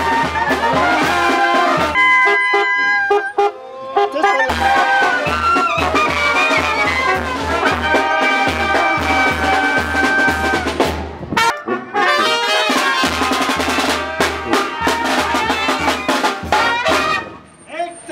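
A Mexican wind band (banda de viento) playing as it marches: trumpets and trombones carry the tune over a sousaphone and drum keeping a steady beat. The bass beat drops out briefly twice while the horns play on.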